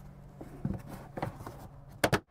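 A few faint knocks and rustles of things being handled at a lorry's cab, over a steady low hum.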